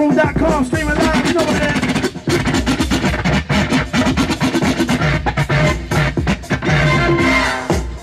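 Hip-hop DJ scratching a vinyl record on a turntable over a beat played through PA speakers, with quick back-and-forth pitch sweeps and rapid cuts.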